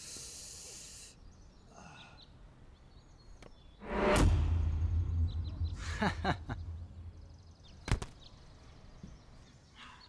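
Fight-scene sound effects: a brief swish at the start, then a loud deep boom with a rumble lasting a few seconds, and a single sharp crack near the end.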